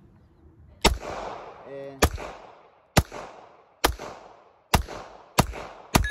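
Semi-automatic pistol fired seven times in slow succession, about one shot a second and a little quicker toward the end, each shot followed by a short echo dying away.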